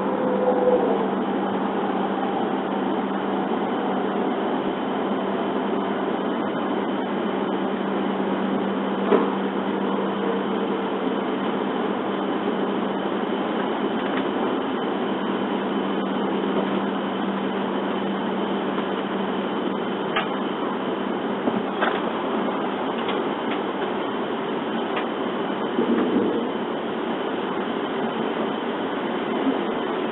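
Steady running noise inside a W7 series Shinkansen car: a rumbling hiss with a low steady hum. A faint whine drops in pitch near the start as the train slows for a station stop, with a few faint clicks.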